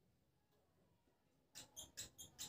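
Near silence, then from about a second and a half in, a quick run of short high squeaks: a marker pen squeaking across a whiteboard as numbers are written.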